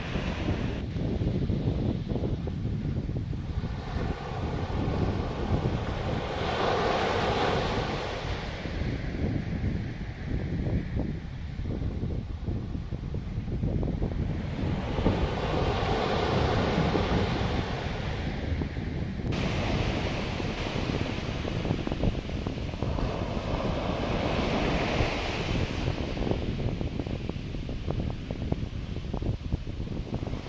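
Small waves breaking and washing up a sandy beach, the surf swelling three times about nine seconds apart. Wind buffets the microphone with a steady low rumble throughout.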